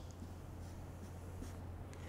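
Faint scratching of a marker pen drawing short dashed lines on a whiteboard-surfaced tactics board, over a steady low hum.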